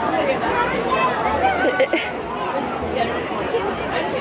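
Several people talking over one another: crowd chatter with no single voice clear enough to follow.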